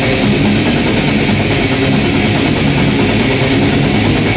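Death metal band playing live, loud and dense, with distorted guitars to the fore.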